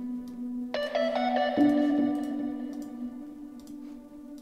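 A beat in progress playing back from FL Studio: sustained chord tones, with a new chord coming in just under a second in and a lower note changing a little later, slowly fading, over faint ticks.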